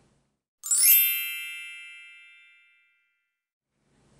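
A single bright chime rings out about half a second in and fades away over about two seconds, with dead silence around it.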